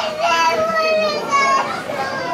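High-pitched voices shouting across a football pitch, with one long drawn-out call in the first second and shorter calls after it.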